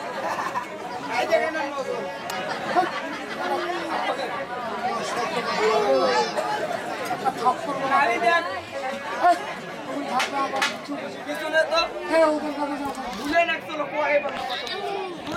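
Speech only: men talking back and forth in a stage dialogue, with chatter from the crowd behind.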